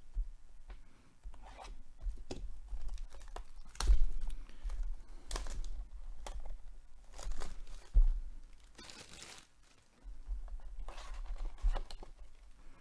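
Plastic shrink wrap being torn and crinkled off a cardboard trading-card hobby box. It comes in irregular rips and crackles, loudest about four and eight seconds in.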